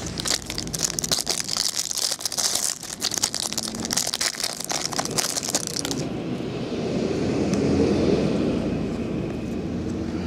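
Clear plastic wrapper on a pack of trading cards crinkling and crackling as it is torn and pulled off the stack of cards, for about the first six seconds. Then a low, smooth rumble swells and fades.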